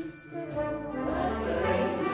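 Orchestral music from a chamber opera performance. It dips briefly just after the start, then the full orchestral sound comes back in.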